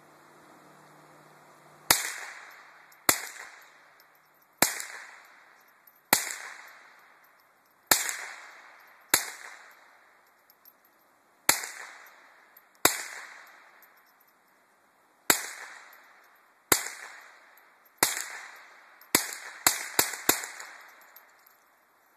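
A scoped rifle fired about fifteen times, each shot trailing off in an echo. The shots come one to two seconds apart and end in a fast run of four shots.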